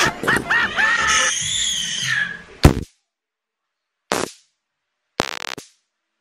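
An inserted cartoon sound clip: a high, wavering voice for about two and a half seconds, cut off by one sharp bang, then dead silence broken by two short bursts of noise.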